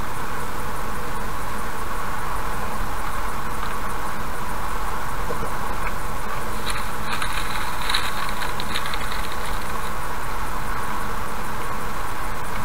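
Steady road and engine noise of a car cruising at about 80 km/h, picked up by a dashcam inside the car. From about six and a half to ten seconds in, a stretch of light clicking with a thin high tone runs over it.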